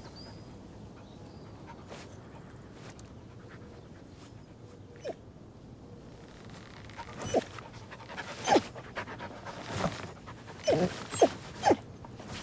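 A corgi panting, with short yelps that fall in pitch, several of them in the second half.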